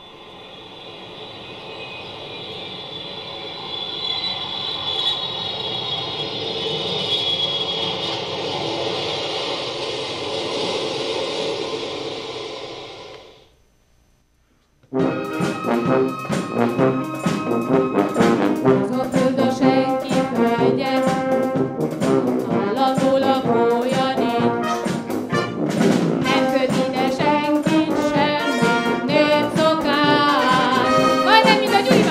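A long wash of sound swells for about thirteen seconds, then cuts off abruptly into a second of silence. The concert wind band then comes in loud and rhythmic, brass to the fore, playing the pop tune with a steady beat.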